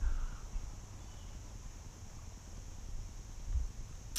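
Faint outdoor ambience: a low rumble and a steady high-pitched hiss, with a soft low thump about three and a half seconds in.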